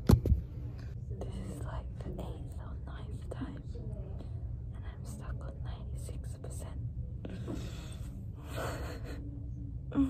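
A young woman whispering and muttering under her breath, over a steady low hum. A hand knocks against the phone just after the start.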